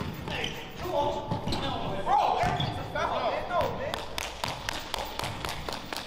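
Basketball bouncing on an indoor court floor in repeated sharp thuds, with players' indistinct voices in the gym.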